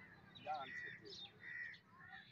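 Faint bird calls: a few short calls, two of them arching tones about a second apart.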